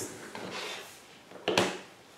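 Sheet of thin distress-inked paper rustling as it is handled over a desk, with one sharper rustle about a second and a half in.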